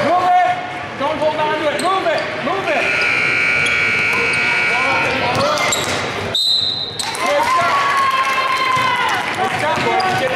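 Basketball dribbling on a gym floor and spectators' voices echoing in a large hall, with one short, high whistle blast about six and a half seconds in, after a shot at the basket.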